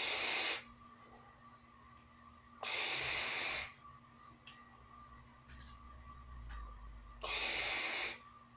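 A person's breath while vaping an e-cigarette: three loud, breathy rushes of air, each under about a second, as vapour is drawn in through the tank's mouthpiece and blown out, about a second in, near the middle, and near the end.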